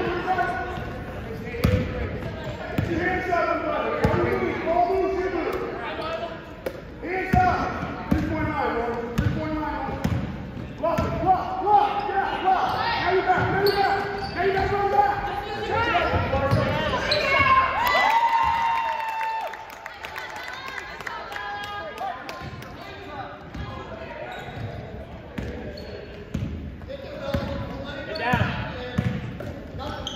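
Basketball bouncing on a hardwood gym floor during play, with indistinct voices of players and spectators throughout, echoing in a large gym.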